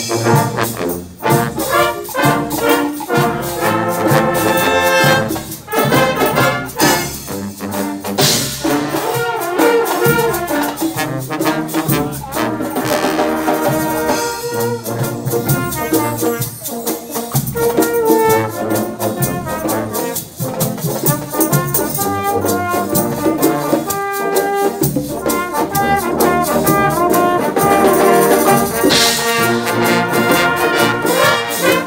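Brass band of trumpets, trombones, saxophones and low brass playing an arranged popular song in E-flat major, the full ensemble coming in at once at the start.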